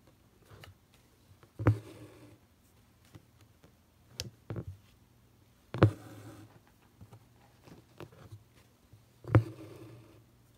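Needle and thread worked through fabric held drum-taut in an embroidery hoop. Three sharp taps come about four seconds apart as stitches are made, with lighter clicks between.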